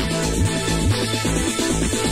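Electronic house music from a DJ set played over a club sound system, with a steady kick drum about twice a second under synth chords.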